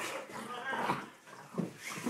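A dog vocalizing in several short, irregular bursts during rough play with a person.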